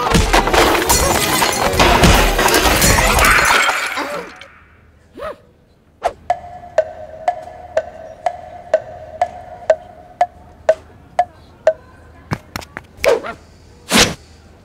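Cartoon sound effects: a loud, dense jumble of chase effects and music for about four seconds. After a short lull comes a steady ticking, about two ticks a second over a held tone, for a hypnotist's coin swinging on a string. Two louder hits come near the end.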